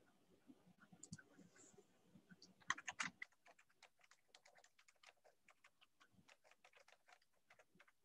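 Faint typing on a computer keyboard, picked up over a video-call microphone. It is a quick run of key clicks, loudest about three seconds in, then keeps going at a steady pace of several clicks a second.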